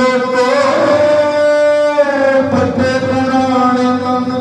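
Harmonium playing an instrumental passage between sung lines of a Sikh kirtan shabad: sustained notes that shift pitch every second or so.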